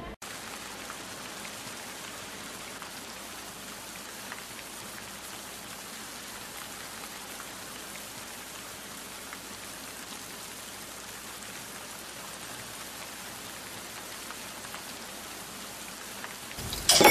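A steady, even hiss with faint scattered crackles, like rain or static. It starts abruptly just after a cut at the very beginning.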